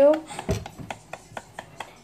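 A spoon clinking and scraping against a ceramic cup while stirring: a run of light, irregular clicks, several a second.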